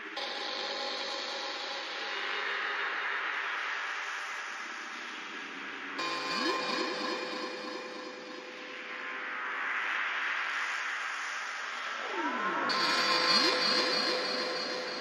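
Beatless electronic intro of a psytrance track: washes of filtered synth noise swell and fade under held synth tones. Gliding synth lines sweep up and down, with new layers coming in about six seconds in and again near the end.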